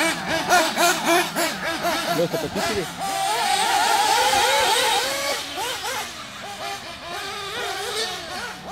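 Several 1/8-scale nitro RC buggy engines, Kyosho MP9 TKI, revving up and down over one another. About three seconds in, one engine holds a steady high-pitched full-throttle note for about two seconds, and the sound then drops away and grows quieter.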